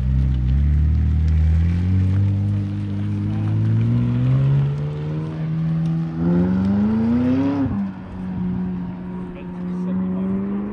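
A car engine accelerating hard, its pitch climbing steadily for about seven seconds, then dropping sharply just before eight seconds in and climbing slowly again.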